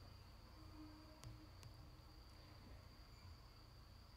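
Near silence: room tone with a faint, steady high-pitched tone and two soft clicks a little after one second in.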